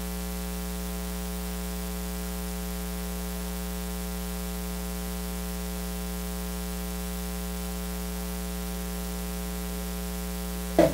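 Steady electrical mains hum with a buzz of evenly spaced overtones over a constant hiss, with no other sound standing out: hum picked up in the microphone or recording chain.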